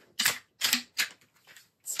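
AEA HP Max PCP air rifle's side lever being cycled back and forward between shots, chambering the next pellet from a spring-fed stick magazine: a quick series of about four short, sharp mechanical clicks.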